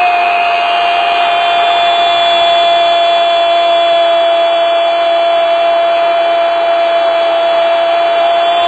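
A football commentator's long drawn-out shout of "gol", one steady held note over loud crowd noise.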